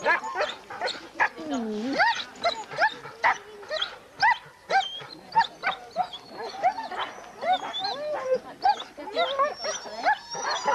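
Harnessed Siberian huskies barking and yelping in a dense, rapid clamour, several short calls a second, the eager noise of sled dogs keyed up to run.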